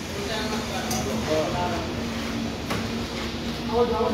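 Men talking in the background over a steady low hum, with a single short knock a little under three seconds in.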